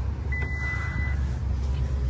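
A single steady high-pitched beep from the Toyota Corolla Cross's power back hatch, lasting just under a second, over a steady low rumble.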